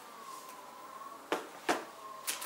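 Two short knocks of packaging being handled, about a third of a second apart, over a faint, nearly steady high tone.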